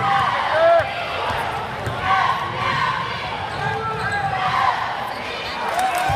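Basketball game in a gym: sneakers squeaking on the hardwood court and a ball bouncing, over spectators talking in the stands.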